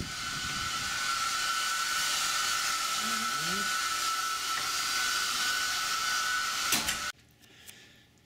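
Room air-conditioning unit blowing: a steady rushing hiss with a high, even whistle. It cuts off suddenly about seven seconds in.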